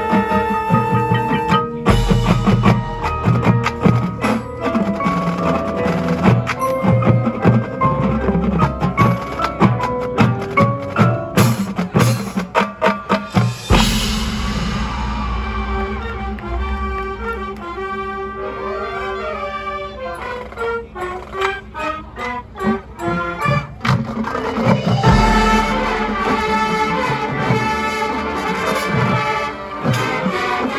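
Marching band music played live on the field: front-ensemble marimbas and other mallet percussion with drum strikes and wind chords. Deep bass swells come in about two seconds in, again near the middle, and again about five seconds before the end; between the last two the texture thins to mostly mallet notes.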